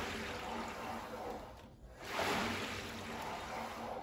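Water rower's paddle churning the water in its tank: a steady swish that dips and swells again with a new stroke about two seconds in. There is no belt squeal: the belt assembly has been lubricated with WD-40.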